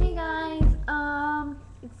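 A girl singing two held notes, with a short thump between them.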